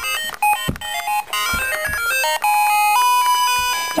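Electronic melody of beep-like notes stepping from pitch to pitch, ending on one long held note, with a few low thumps.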